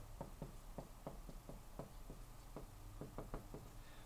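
Marker pen writing on a whiteboard: a quick, irregular run of faint taps and strokes as a word is written out.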